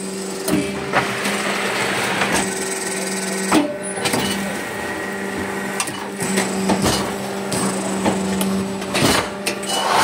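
Hydraulic fly ash brick making machine running: a steady hum from its hydraulic power pack, with scattered metallic clanks and knocks from the press.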